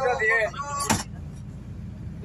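Steady low road rumble inside a moving bus, with voices over the first part and one sharp click a little under a second in.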